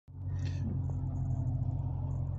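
Dodge Challenger Scat Pack's 392 HEMI V8 idling, a steady low rumble heard from inside the cabin. A brief soft hiss comes about half a second in.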